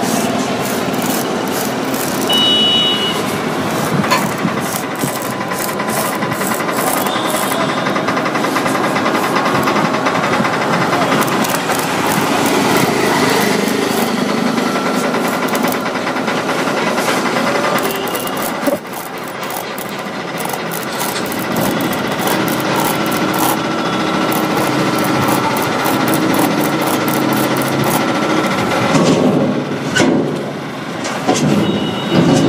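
Steady, loud engine-like mechanical running noise with a fast clatter running through it, dipping briefly about two-thirds of the way through.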